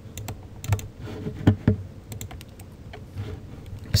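Computer keyboard keys clicking in a scatter of irregular keystrokes.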